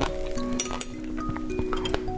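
Light glass clinks as a straw and a glass drinking vessel knock together, a few sharp taps, one right at the start and one near the end. Gentle background music with held notes plays throughout.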